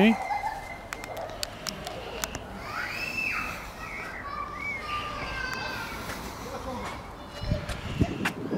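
A man's voice rises briefly at the very start. A bird gives a short rising-then-falling call about three seconds in, followed by a few shorter chirps, with scattered light clicks throughout.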